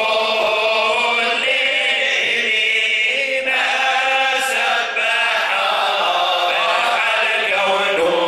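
Male voices chanting Sufi devotional praise (dhikr) unaccompanied, in long melodic lines with held notes.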